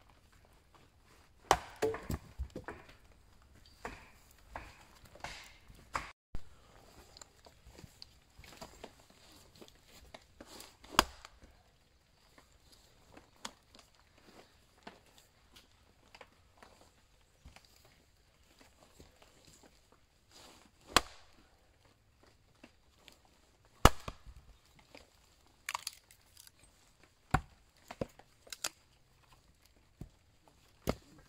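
Hatchet blows splitting a small log on a wooden chopping block: a quick run of sharp strikes about two seconds in, then single blows several seconds apart, and a short cluster near the end.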